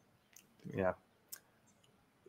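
A short spoken "yeah" with two faint, brief clicks, one before it and one after, and dead silence in between.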